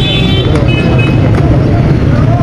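Busy street traffic: a steady low engine rumble, with a short high tone sounding twice in the first second.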